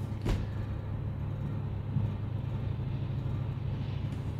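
Steady low background hum with no speech, broken once by a short click shortly after the start.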